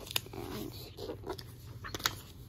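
Paper activity sheets being handled and shuffled on a bed: soft rustling with a few light taps and clicks.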